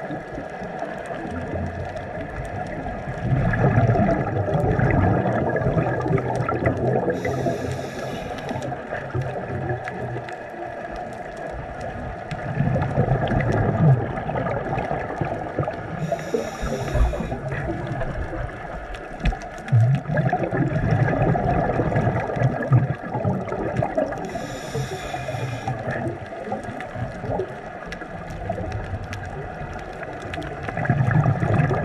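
Scuba diver breathing through a regulator underwater: three short hissing inhalations about eight seconds apart, each followed by a low bubbling rumble of exhaled air.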